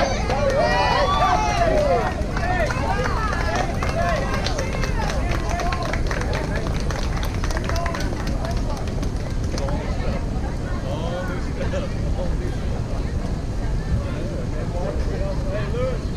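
Spectators and players at a youth baseball game shouting and chattering over one another, loudest in a burst of overlapping calls in the first two seconds, then scattered voices over a steady low rumble.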